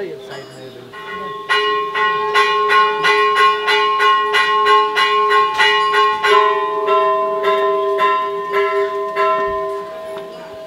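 Brass temple bells struck by hand. From about a second and a half in they are rung rapidly, about four strikes a second, with their tones ringing on and overlapping. After about six seconds the strikes come more slowly while the ringing carries on.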